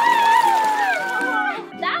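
A child's long drawn-out "ohhh" of delight, rising in pitch and then held before falling away, over cheerful background music.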